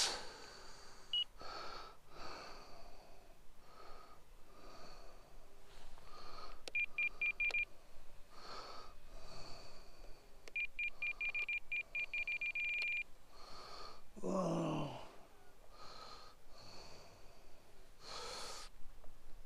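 Spektrum NX8 radio-control transmitter giving quick runs of short, high beeps as the trim is stepped: a short run about a third of the way in and a longer one from about ten to thirteen seconds in. Soft breaths are heard about every second, and a brief falling sigh comes near the end.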